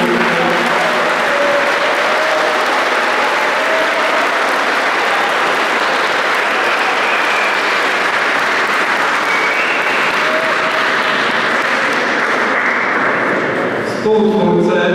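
A long, steady round of audience applause: many people clapping together.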